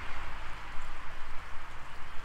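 Steady outdoor background noise: an even hiss with a constant low rumble underneath, with no distinct events.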